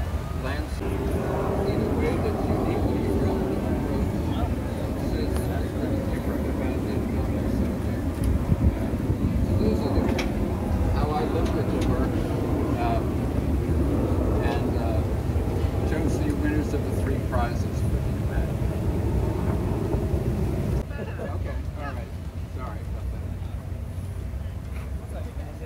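A person's voice addressing an outdoor crowd, too distant and indistinct to make out, over a steady low rumble of wind on the microphone.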